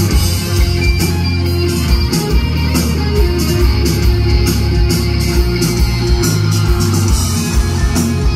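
Live alternative rock band playing an instrumental passage with no vocals: distorted electric guitars over bass and a drum kit, with regular cymbal hits.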